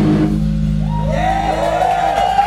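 Live rock band ending a song: the full loud band sound stops about half a second in, leaving a low amplified note ringing on under smooth, sliding, rising-and-falling higher tones.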